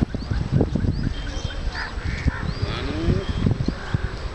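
Outdoor ambience: a steady low rumble with several short, high, arching bird calls repeated through it.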